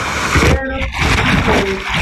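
Whitewater crashing over a tule reed raft and the camera riding on it: a loud, continuous rush of breaking water with heavy surging splashes. Two short voice sounds come through the water noise.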